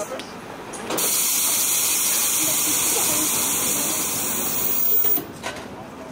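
Steam train letting off steam: a loud, steady hiss that starts abruptly about a second in and cuts off sharply about four seconds later.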